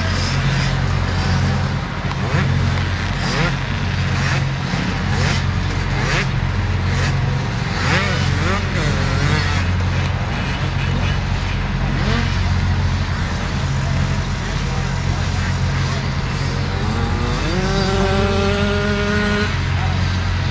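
Motocross bike engines revving at the start line over a steady low engine drone, with a clear rising rev near the end.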